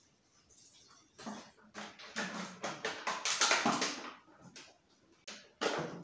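Water glugging out of a plastic bottle into a glass bowl of sliced fruit and ginger, starting about a second in, loudest in the middle and tailing off. A short clatter near the end.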